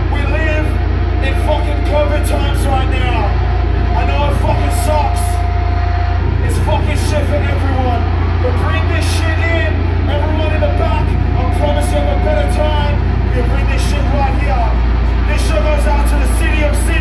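Between songs at a loud metal gig: voices talking over a steady, loud low rumble from the stage amplifiers, with a few short high crackles.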